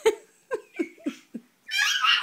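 Four short, quick giggles, each falling in pitch, then a high-pitched baby squeal near the end.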